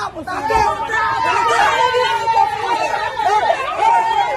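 A group of women talking and exclaiming excitedly over one another, with laughter about two seconds in and a long held note running under the voices.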